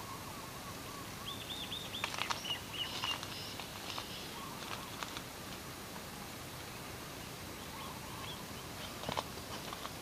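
Small birds chirping: a quick run of short, arched chirps about a second in and scattered calls after, over a steady background hiss, with a few light clicks and rustles.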